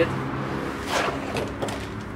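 Clear plastic bag crinkling as a shock absorber is pulled out of it, loudest about a second in, over a steady low hum.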